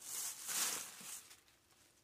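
Thin plastic bag rustling and crinkling as hands work it off a doll dress on its hanger, for just over a second before it fades.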